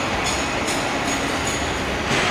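Steady shop-floor noise of a locomotive works: a low machinery rumble with a faint high whine that comes and goes.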